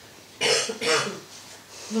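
A person coughing: two short, sharp coughs about half a second in.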